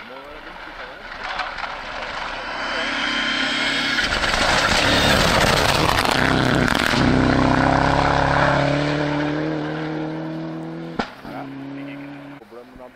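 Mitsubishi Lancer Evolution rally car approaching and passing at speed, its turbocharged four-cylinder engine growing loud and dropping in pitch as it goes by about seven seconds in, then fading away. A single sharp crack near the end.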